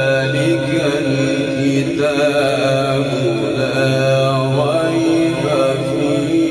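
A male qari reciting the Quran in a melodic chanting style, holding long drawn-out notes with wavering ornaments and slow rises and falls in pitch, without a break.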